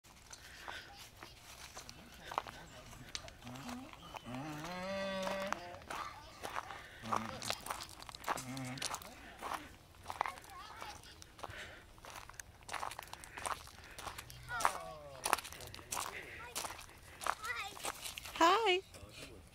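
Footsteps crunching on a gravel path, an irregular run of short crunches throughout. Brief indistinct voices break in now and then.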